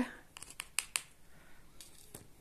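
Plastic fork scraping and clicking in loose potting soil in a plastic cup, a quick run of sharp little clicks in the first second, then faint rustling.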